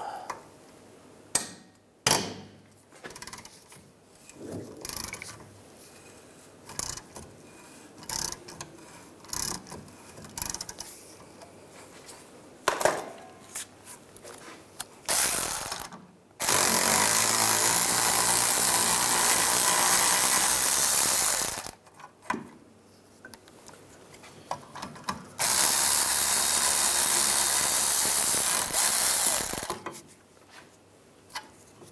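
Scattered clicks and clinks of a socket tool on steel bolts. Then a cordless ratchet runs twice, for about five seconds and then about four, spinning out the two 8 mm hex bolts of the rear brake caliper bracket.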